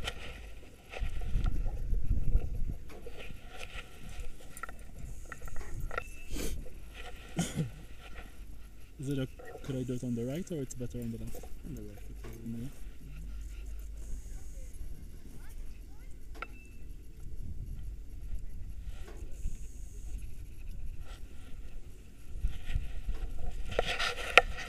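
Wind rumbling on an action camera's microphone on an open snowy slope, strongest about a second or two in. Muffled voices come through around the middle, with a few sharp knocks from the camera being handled.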